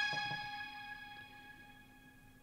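A held electronic keyboard chord in a music-production session, ringing on and fading out over about a second and a half, with two short low notes near the start.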